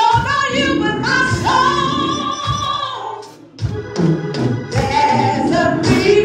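Woman singing a gospel song, holding one long note in the middle before a short break, with a few sharp percussive hits.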